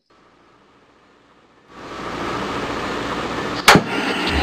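Radio static sound effect: near silence, then a steady hiss fades in just under halfway through, with a sharp click near the end.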